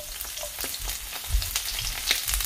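Sliced red onions sizzling in hot sesame oil in a wok as they are pushed in from a plate, a steady hiss full of small crackling pops.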